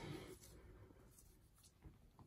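Near silence: room tone with a few faint, soft handling sounds as plush toys and their paper tags are set down on a table.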